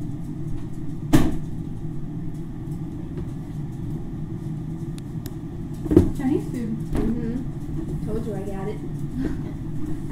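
An interior door pulled shut with a single sharp knock about a second in, over a steady low hum. Later come two more knocks and faint voices.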